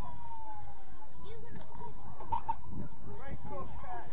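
Scattered shouts and calls of players and sideline spectators at a youth football match, too distant to make out, over a steady low rumble of wind on the microphone. A faint tone, slowly falling in pitch, fades out about a second in.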